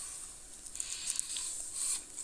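Faint chewing of a bite of pizza, heard as a soft hiss with a few light clicks that thickens about a second in.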